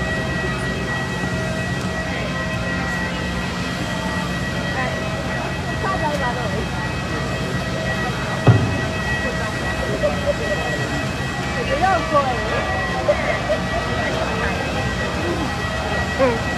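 Steady machine whine and low hum from airport machinery on the apron. The hum cuts off with a single thump about halfway through, and indistinct voices of people nearby are heard in the second half.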